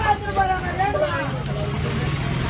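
A heavy fish-cutting knife strikes the wooden chopping block once, right at the start, over background voices and a steady low hum.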